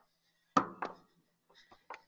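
Microphone handling noise: two sharp knocks close on the mic about half a second in, each dying away fast, then a few fainter clicks near the end, over a faint steady hum.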